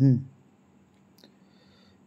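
A man's voice briefly at the start, falling in pitch, then quiet room tone broken by a single sharp click a little over a second in.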